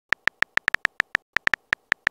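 Keyboard typing sound effect of a texting-story chat app: a quick, uneven run of short, high-pitched ticks, one per letter typed, about fourteen in two seconds.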